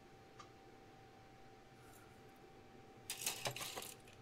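Plastic model-kit sprues clattering and crackling for under a second near the end as they are set down on the pile of parts; before that, near silence with a faint steady hum.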